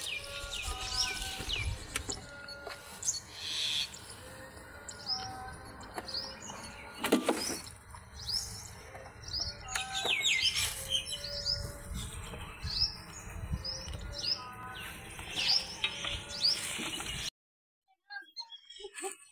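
Birds chirping, with many short, quick calls throughout and a brief noisy burst about seven seconds in. The sound cuts off abruptly shortly before the end.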